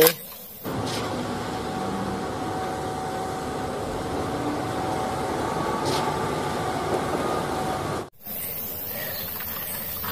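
Concrete mixer truck's diesel engine running steadily amid street traffic, starting about a second in and cutting off abruptly about eight seconds in.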